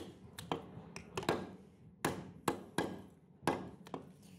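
Butcher's cleaver chopping mutton on a round wooden chopping block: about ten sharp chops, unevenly spaced, some in quick pairs.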